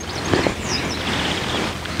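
Rustling handling noise as a small plastic product packet is picked up and handled, starting a moment in and continuing steadily.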